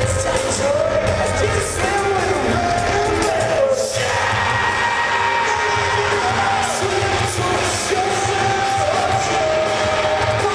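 Live rock band playing, electric guitars, keyboard and drums under a singer's voice holding long, gliding melody lines, recorded from the audience.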